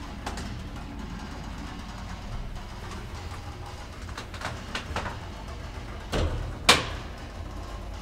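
ASEA-Graham elevator car with a steady low hum, a few light clicks, then a heavy thud and a sharp bang about six and a half seconds in.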